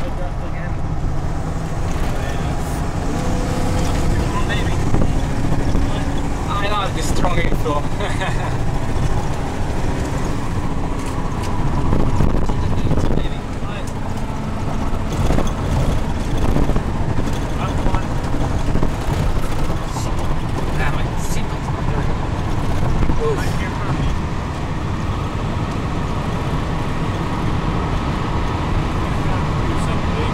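Steady road and engine noise inside a moving car's cabin: a continuous low rumble of tyres and engine at highway speed.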